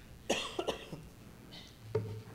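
A person coughing twice in quick succession, in a quiet room.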